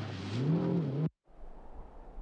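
Turbocharged flat-six engine of a Porsche 930 Turbo revving, its pitch rising and then falling over about a second before it cuts off suddenly. A faint low rumble follows.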